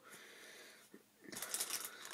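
A person's short, audible in-breath about a second and a half in, after a second of faint room hiss.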